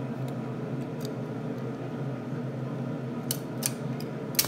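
Sharp plastic clicks from a small toy car launcher being worked: a couple of faint ones early, then three sharp clicks close together near the end as the car is set off. A steady low hum runs underneath.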